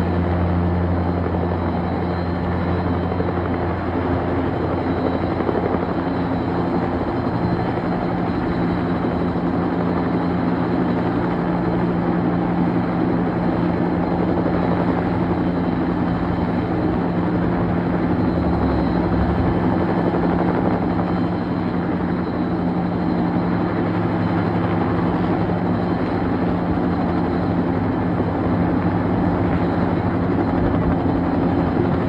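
Firefighting helicopter hovering low over a river, its rotor and engine running loud and steady while it dips a water bucket on a long line to fill it.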